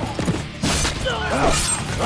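Action-scene soundtrack: a sudden loud burst of noise about half a second in, then a man's strained cry, over a steady low music bed.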